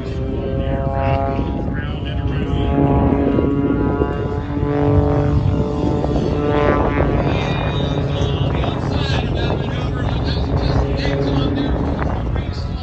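Aerobatic propeller plane's engine running at high power in flight overhead, its note rising and falling in pitch as the plane manoeuvres.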